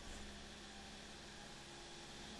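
Faint steady hum with hiss from a Toyota Hilux 3-litre 1KD turbo-diesel engine running at about 2000 rpm under load on a chassis dyno, its throttle going toward full.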